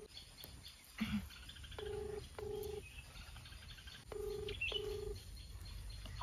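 Ringback tone of an outgoing mobile call, heard through the phone's speaker: a low double ring, two short beeps close together, sounding twice about two seconds apart while the call rings unanswered.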